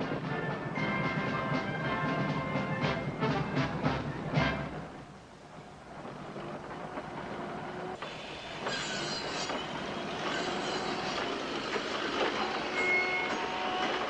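Music fades out over the first few seconds. Then come building-site sounds: roofers handling and tapping down wooden roof shingles, with scattered sharp knocks over a steady background.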